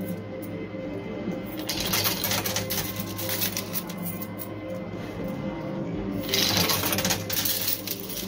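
Coins clattering and clinking in a coin pusher machine, thickest about two seconds in and again after about six seconds, over steady background music.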